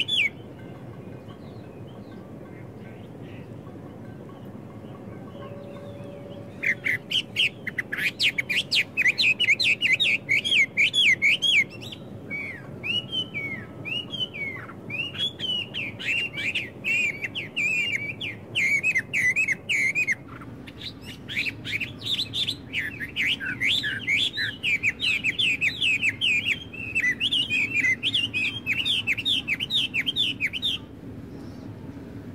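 Songbirds singing in quick, high chirping phrases. They are quiet for the first six seconds or so, then come in dense runs, with slower down-slurred notes in the middle.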